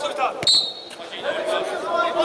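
Players' voices echoing in a large indoor football hall, with a thump about half a second in followed at once by a brief high referee's whistle blast.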